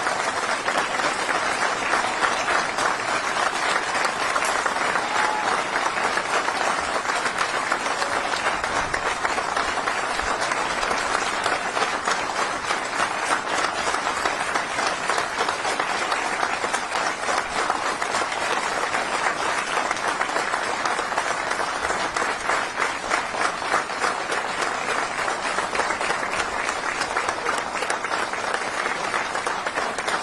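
Crowd applauding, a dense and steady patter of many hands clapping.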